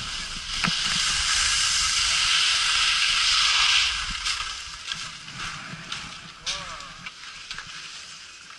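Skis scraping over snow: a loud hiss that swells about half a second in and falls away just before the four-second mark. Quieter scattered scrapes and clicks follow.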